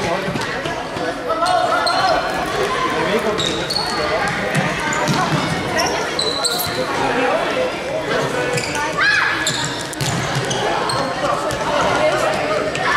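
Sound of an indoor youth football match in a large, echoing sports hall: the ball being kicked and bouncing on the wooden floor, shoes squeaking, and players and spectators calling out. A short rising squeak stands out about nine seconds in.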